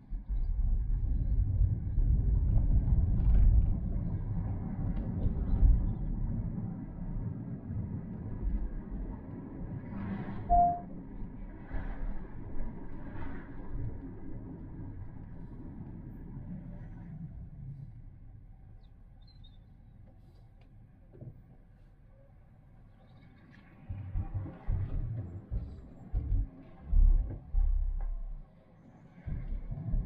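Low rumble of a car driving, heard from inside the cabin: strongest in the first few seconds, dying down to a faint hum about two-thirds of the way through, then swelling again in uneven surges near the end. A brief tone sounds once about ten seconds in.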